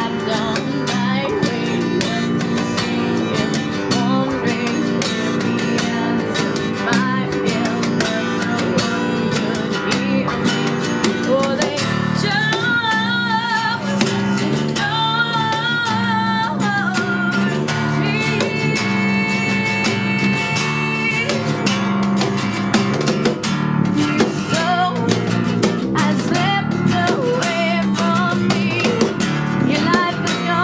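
A live acoustic band playing: guitar picked and strummed in a steady repeating pattern under a woman's singing voice, which holds long notes with a wavering vibrato around the middle.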